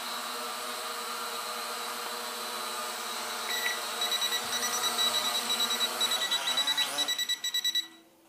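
Small S160 quadcopter drone hovering, its propellers and motors making a steady whine, joined from about halfway by rapid electronic beeping at several beeps a second. Near the end the motor pitch wavers and then cuts off suddenly as the drone is caught by hand.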